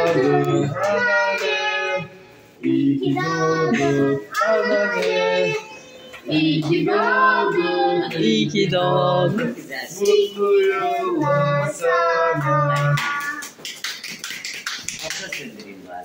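Several voices, a child's among them, singing a birthday song, with a brief pause about two seconds in.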